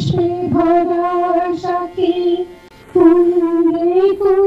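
A woman singing a slow song into a handheld microphone, holding long, steady notes, with a short break about three seconds in before the next held note.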